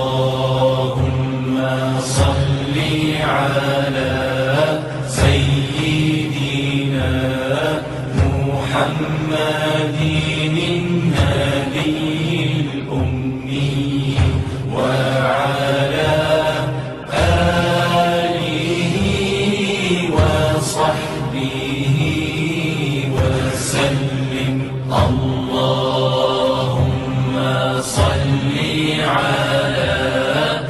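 Background vocal chant: a voice holding long, wavering notes over a steady low drone, phrase after phrase.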